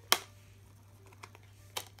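Plastic clicks from a DVD case and its discs being handled: one sharp click just after the start and a softer one near the end, with a few faint ticks between, as discs are unclipped from and pressed onto the case's hubs.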